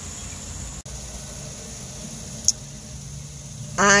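Steady low hum of a parked car's cabin background, with a momentary dropout about a second in and a single short click about two and a half seconds in.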